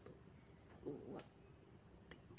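Near silence: room tone, with one brief faint vocal sound about a second in.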